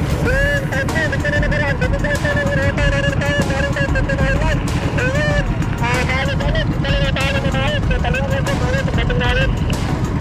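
Outrigger boat (bangka) engine running with a steady low rumble, with a voice talking over it.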